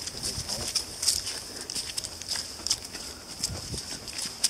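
Footsteps walking on a dirt trail strewn with dry fallen leaves, about three steps a second.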